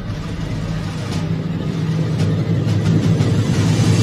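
A low, noisy rumble that grows steadily louder, a swelling sound-design effect building toward a hit.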